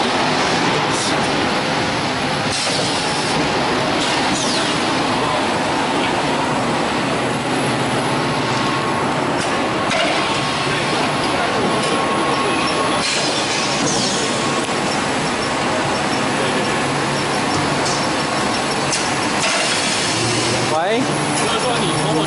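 PET bottled-water production line running, its bottle conveyor and shrink-wrap packing tunnel giving a steady, dense machinery din. Voices sound in the background.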